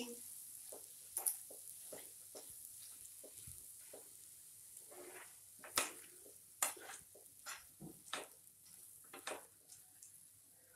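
Spatula stirring and tossing cooked vermicelli upma in a nonstick frying pan: soft, irregular scrapes and taps, a few louder strokes in the second half, over a faint sizzle from the still-hot food.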